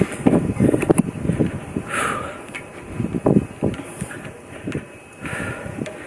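Irregular knocks, thumps and rustling of body movement picked up by a body-worn camera as its wearer moves along a metal handrail by concrete steps, with a few sharp clicks.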